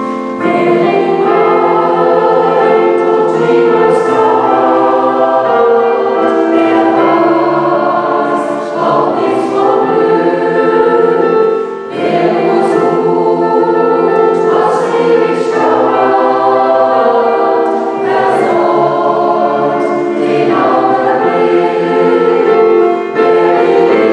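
Mixed choir of men's and women's voices singing a sacred song in harmony, coming in about half a second in after a piano introduction, with the hissing 's' sounds of the words standing out.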